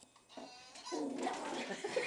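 Small long-haired dog making low, wavering whine-like vocal sounds, starting about half a second in.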